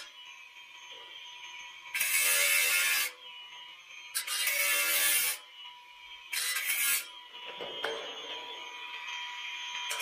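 Angle grinder with a cutting disc working through a steel C-purlin. The motor whines steadily, and three times the disc bites into the steel with a loud harsh hiss, each for about a second: around two, four and six and a half seconds in.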